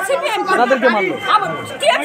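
Speech only: a woman talking, with other voices chattering around her.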